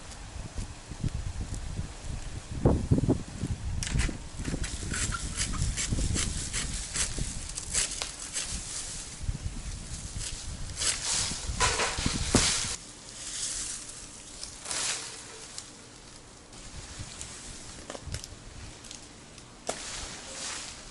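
Scattered snaps, clicks and rustling of palm fronds as a rope-operated pole pruner cuts a coconut palm frond. A louder rushing rustle comes about 11 to 12 seconds in, as the frond comes down.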